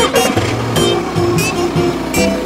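Upbeat instrumental children's song music with a cartoon bus engine sound effect running over it.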